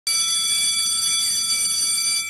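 A steady high-pitched tone with a stack of overtones, like an alarm beep, starting suddenly and held at an even level.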